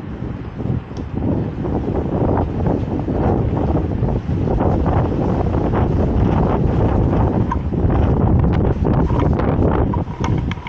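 Strong wind buffeting the camera microphone in gusts, a loud low rumble that picks up after a couple of seconds.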